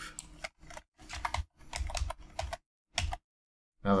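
Typing on a computer keyboard: quick keystrokes in several short bursts, stopping about three seconds in.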